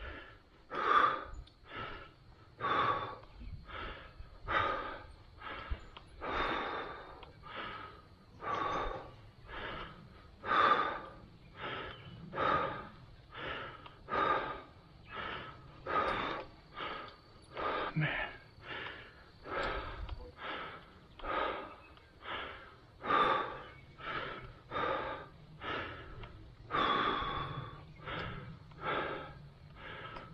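Heavy, rhythmic breathing of a cyclist pedalling hard, in and out about once a second: the rider is out of breath from the effort.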